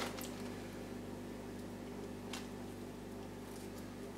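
Quiet room tone with a steady low hum, and two faint soft ticks, one at the start and one about halfway, of hands working wet orchid potting mix loose from the roots.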